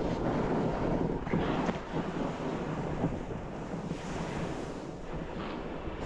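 Snowboard sliding and carving over snow at speed, a steady rushing hiss, with wind rushing over the camera microphone.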